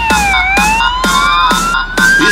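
Fire engine siren wailing: its pitch dips briefly, then rises slowly. Electronic music with a steady beat plays alongside it.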